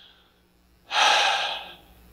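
A man's single long breath close to a handheld microphone, starting about a second in and lasting under a second.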